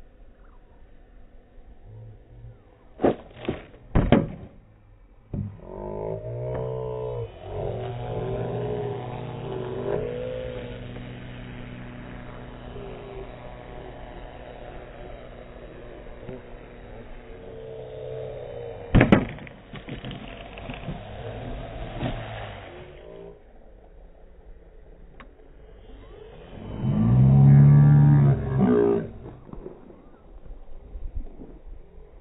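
Sky Surfer RC model plane's electric motor and propeller droning on low passes, the pitch bending as the plane comes and goes, loudest on a close pass near the end. A few sharp knocks come about three to four seconds in and one more about two-thirds of the way through.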